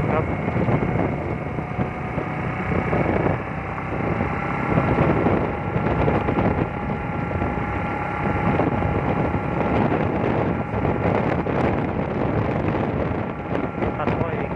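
A vehicle driving steadily along a paved road: engine and road noise with wind buffeting the microphone.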